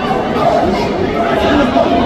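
Many voices talking and shouting at once around an amateur boxing bout: spectators' and cornermen's chatter filling the arena.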